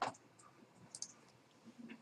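Computer mouse clicking: one sharp click right at the start, then a fainter click about a second in.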